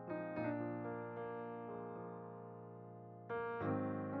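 Background music: soft electric piano chords, with a new chord struck near the end.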